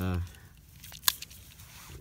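A single sharp plastic click about a second in, from a LifeStraw personal water filter being handled as its cap is about to be popped open.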